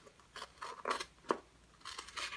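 Scissors snipping: four short cuts spaced about half a second apart.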